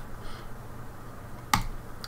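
Quiet room tone, then a single sharp click about a second and a half in.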